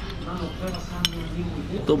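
A single sharp clink of a metal spoon against a soup bowl about a second in, over a low murmur of restaurant chatter.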